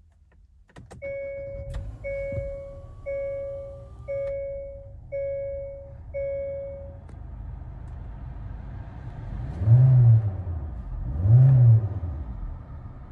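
A 2020 Hyundai Elantra's four-cylinder engine starting and idling, with a dashboard warning chime sounding six times, about once a second. Near the end the engine is revved twice, each rev rising and falling briefly and loudest of all.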